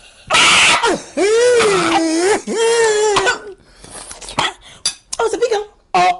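A young woman's long, wavering cries of disgust, two or three drawn-out wails in a row, as she reacts to the sour, vinegary taste of a pickle-juice mixture she has just swallowed, followed by a short cry near the end.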